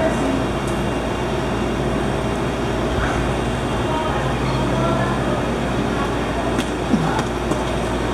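Steady background din around an open stingray touch pool: water moving in the pool, with faint voices of other visitors.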